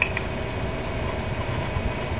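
Open telephone line between words: a steady low rumble and hiss with a faint hum, and a small click just after the start.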